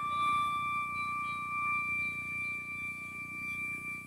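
Flute holding one long, steady note that fades slowly, the tail of a slow melodic phrase, over a soft background hiss.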